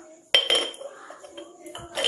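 Metal kitchen utensils clinking: one sharp, ringing strike of a spoon on a metal bowl about a third of a second in, then lighter scraping and a small tap near the end, as seasoning is spooned in.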